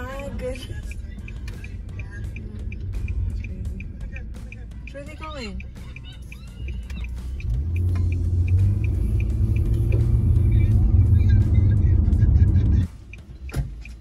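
A car's V6 engine heard from inside the cabin: a low rumble that swells loud about halfway through, holds steady for several seconds, then cuts off suddenly near the end. A voice and music are faint under it early on.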